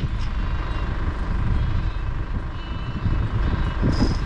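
Can-Am Defender side-by-side idling while stopped: a steady low engine rumble with a faint whine above it.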